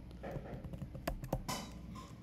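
Typing on a computer keyboard: a short, irregular run of key clicks as a word is typed into a code editor.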